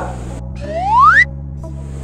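Background music with a single rising whistle-like sound effect that starts about half a second in, climbs steadily in pitch and cuts off abruptly after just over a second.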